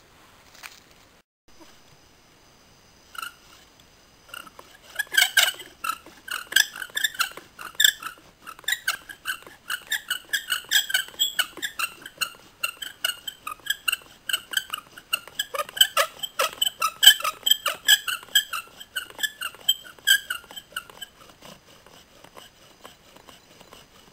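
Bow drill: the wooden spindle squeaks against the fireboard with each stroke of the bow, a rhythmic run of high squeals that starts about four seconds in and fades out near the end. This squeaking ('singing') comes from a spindle that has not yet settled into heating the board.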